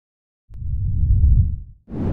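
Logo-reveal intro sound effect: a deep rumbling swell that starts with a click about half a second in, then a second deep hit with a sharper, brighter attack just before the two-second mark.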